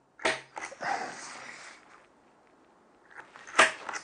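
Steel awl point scratching into timber as a centre mark is pressed in, a scratchy sound that fades over about a second and a half. A single sharp click follows near the end.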